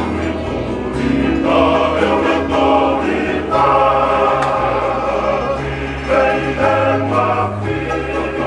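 A Tongan kalapu men's chorus singing in close harmony to strummed acoustic guitars, the voices holding long chords that change every second or two over a steady bass.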